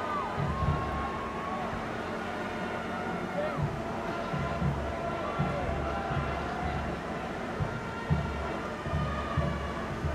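Distant voices and chatter from people across an open stadium, with irregular low rumbling gusts of wind on the microphone throughout.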